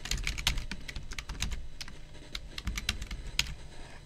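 Typing on a computer keyboard: a quick run of key clicks, then a few spaced clicks.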